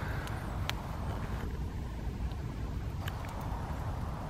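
Small wood fire of sticks burning, with a few sharp crackles over a steady low rumble of breeze on the microphone.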